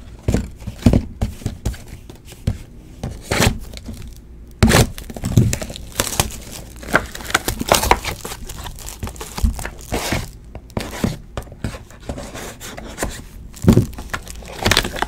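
Sealed cardboard hobby boxes of trading cards being handled and moved about: irregular knocks and taps of the boxes, with packaging crinkling and tearing.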